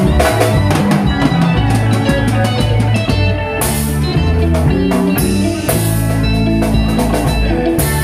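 Live Congolese dance band playing an instrumental passage: interlocking electric guitars over a bass line and a steady drum-kit beat, with two cymbal crashes in the middle.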